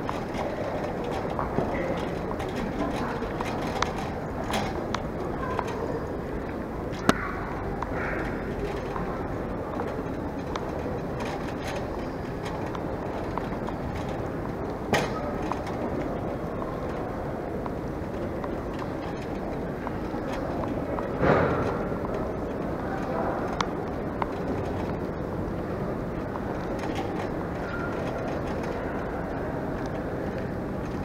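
Airport baggage trolley being pushed along, its wheels rolling steadily with occasional clicks and knocks, one louder bump about two-thirds of the way through. Indistinct voices of people around.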